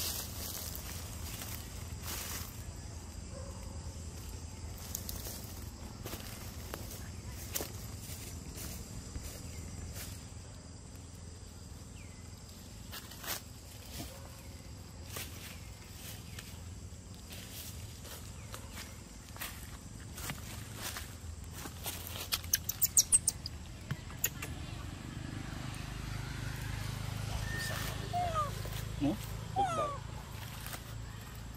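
Long-tailed macaques moving and feeding in dry leaf litter: scattered rustles and small clicks over a steady outdoor background. About three quarters of the way through there is a quick run of sharp, high chirping clicks. Near the end come a few short squeaky calls that glide in pitch.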